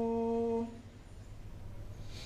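A voice humming one long held note that stops about two-thirds of a second in, leaving faint low room noise.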